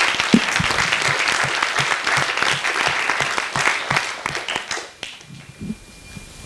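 Audience applauding, many hands clapping together, then dying away about five seconds in.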